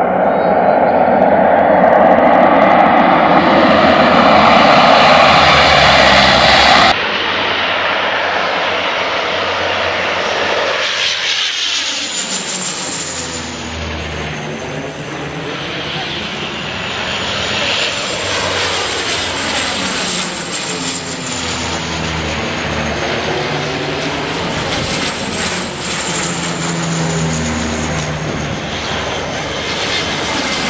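A loud, steady roar that cuts off sharply about seven seconds in. Then Canadair CL-215T turboprop water bombers fly low overhead one after another, their engine pitch rising and falling as each passes.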